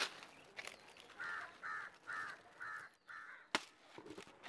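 A crow cawing five times in a steady series, about two calls a second, faint. A single sharp click follows near the end.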